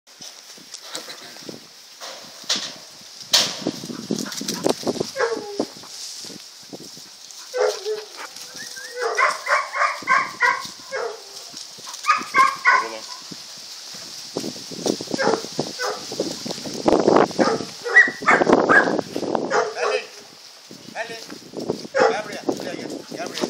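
Setter dogs barking and yelping in quick runs of short, high calls, the busiest run about nine to eleven seconds in, with a steady high buzz underneath throughout.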